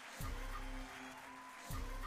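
Slot game's background music playing quietly, steady tones with two low thuds, one just after the start and one near the end, as the reels spin and land.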